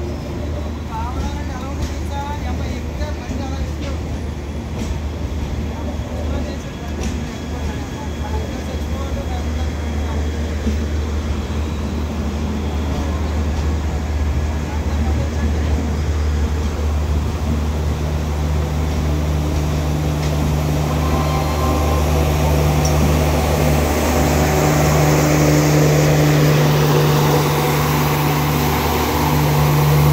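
LHB passenger coaches rolling slowly past along a platform with a steady low rumble as the train comes in to stop. From about halfway a steady engine hum grows louder as the rear power car's diesel generator draws alongside.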